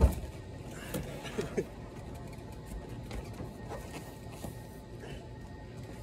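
A single heavy thump as a classic car's rear bench seat cushion is pushed in and up to free it from its mounts, followed by a few fainter knocks of handling about a second later.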